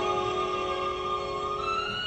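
Piano notes held and ringing as they slowly fade, with a soft high note added near the end.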